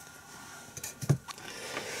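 Light handling noise: a few soft clicks and a dull knock about a second in as a small pine block is set down on the bench.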